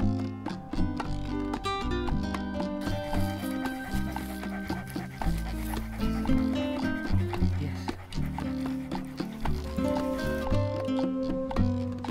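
Background music: held notes over a bass line that changes every second or so.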